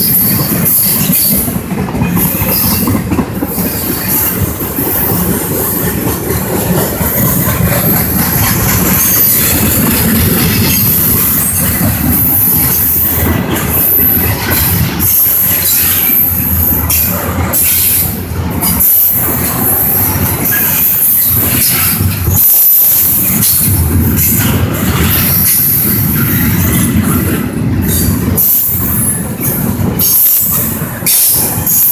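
Double-stack container well cars of a freight train rolling past at speed: a loud, steady rumble and clatter of steel wheels on rail, with a high hiss over it.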